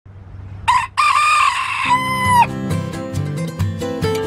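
Rooster crowing once: a short opening note, then a long held note that drops in pitch at the end. Plucked acoustic guitar music comes in near the end of the crow and plays on.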